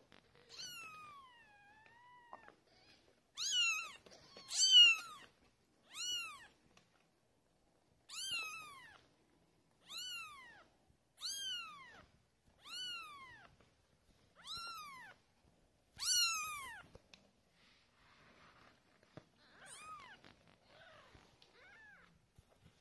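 Week-old Ragdoll kittens mewing. One long, wavering cry comes first, then a run of about ten short, high-pitched mews a second or so apart, each rising then falling in pitch. Fainter mews follow near the end.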